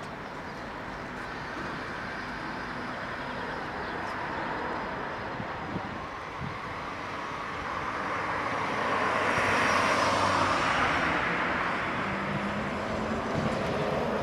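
Trolleybus driving past on its overhead wires, heard mostly as road and tyre noise over general street traffic. The noise swells to its loudest about ten seconds in, then eases.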